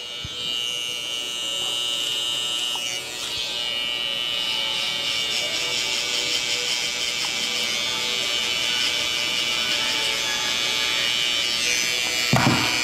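Cordless T-blade hair trimmer running with a steady high buzz as it cuts a guideline at the hairline around the ear, over background music.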